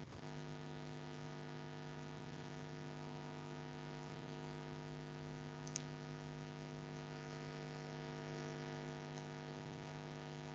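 Steady electrical hum on the recording line, a low buzz with several overtones, and a single short click about six seconds in.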